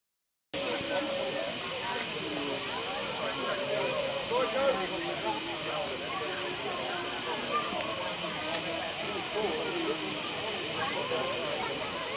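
Steady hiss of steam from a miniature live-steam locomotive standing with a full train, with crowd chatter underneath.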